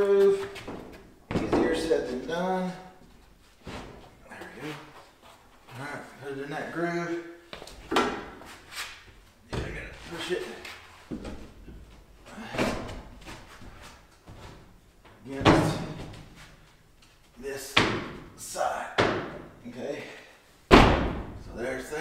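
Thick plywood wall panel knocking and thudding against wooden framing as it is pushed and worked into a groove, about a dozen sharp knocks spaced unevenly.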